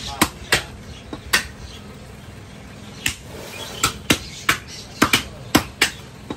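Cleaver chopping beef on a wooden chopping block in sharp, irregular chops. There are about four in the first second and a half, a pause, then a quicker run of about eight in the last three seconds.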